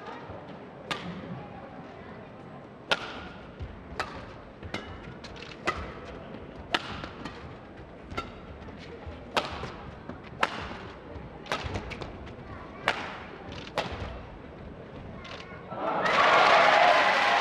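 A badminton rally: rackets strike the shuttlecock in a sharp crack about once a second, a dozen or so times, over a low crowd murmur. Near the end the rally is won and the crowd breaks into loud cheering and applause.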